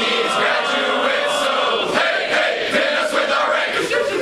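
A large group of men singing a unit song together in unison, loudly: held notes for about the first two seconds, then shorter, choppier phrases.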